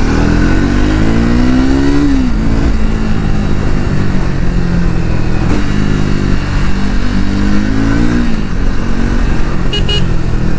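Triumph Speed 400's single-cylinder engine heard from the rider's seat while riding: it pulls up through the revs, drops back about two seconds in, runs steady, then climbs again and drops back near the end. A brief high double beep sounds just before the end.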